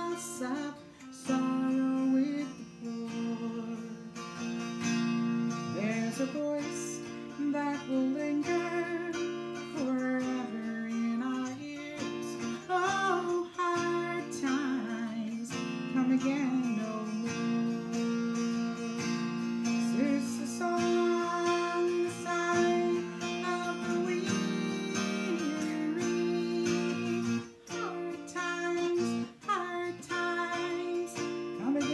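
Blue Lion baritone mountain dulcimer, tuned A♯–F–A♯–A♯, strummed with a pick while the melody is fretted, with steady drone notes held underneath.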